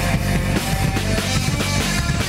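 Live rock band playing: drum kit and electric guitars.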